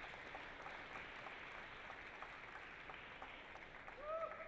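Faint, scattered applause from a small crowd: a steady patter of many light hand claps.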